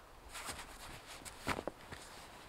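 A stuffed sleeping-bag stuff sack and its straps being pulled and pressed down: fabric rustling, then a sharp click about a second and a half in, with a couple of smaller clicks after it.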